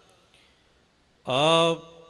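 A short hush, then about a second in a man's voice starts a long, held sung syllable of Gurbani chant.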